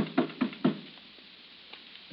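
Knocking on a door, a radio-drama sound effect: a quick run of about four raps in the first second, then they stop.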